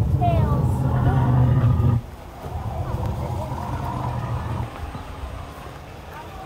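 Recorded dinosaur growl played from an animatronic exhibit's loudspeaker: a low, distorted sound, like a broken TV, in two stretches, the first about two seconds long and loudest, ending abruptly, the second fainter and a little longer.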